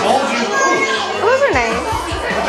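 Children and adults talking over one another in a crowded room. Near the end, one high voice gives a drawn-out exclamation that rises and falls in pitch.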